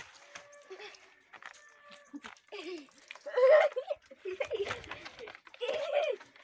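Boys' voices laughing and shouting excitedly without clear words, loudest about three and a half seconds in.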